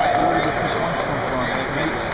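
Men's voices calling out across a busy, echoing hall, over a steady background of crowd noise.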